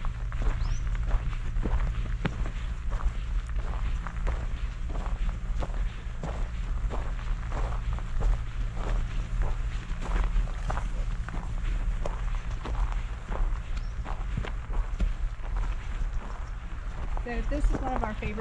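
Footsteps walking uphill on a dry dirt and gravel trail at a steady pace, about two steps a second, over a steady low rumble.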